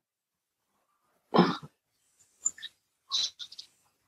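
A man's soft laughter over a video call: two short breathy chuckles, about a second and a half in and again past three seconds, with small mouth clicks between and silent gaps around them.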